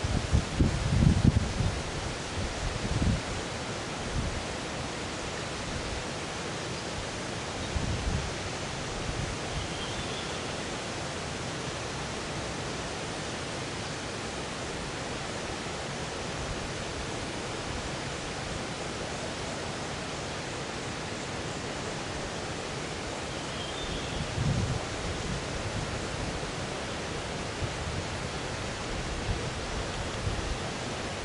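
Steady outdoor hiss, with a few brief low rumbles of wind or handling on the microphone: strongest in the first few seconds, again at about a quarter of the way in, and near the end.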